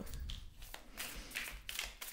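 A deck of tarot cards being shuffled by hand: faint, quick taps and rustles of the cards against each other.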